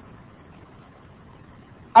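Faint steady background hiss and hum of a voice recording during a pause in speech, with a man's voice starting again at the very end.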